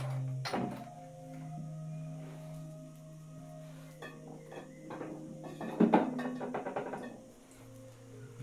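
Soft background music of sustained, slowly shifting drone-like tones, with a few knocks and clicks of a bottle and other objects being handled, the loudest about six seconds in.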